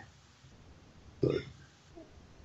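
A pause in conversation with only low background hiss, broken just past a second in by one short spoken 'yeah'.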